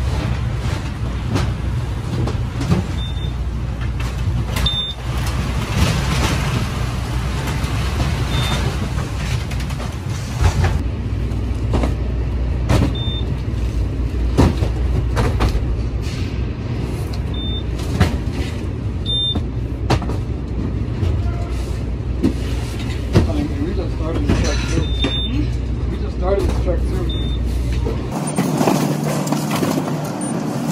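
Cardboard packages knocking and thudding as they are loaded and stacked in a trailer, over a steady low rumble of warehouse machinery. Short, high, single-pitched beeps from a handheld package scanner sound every few seconds.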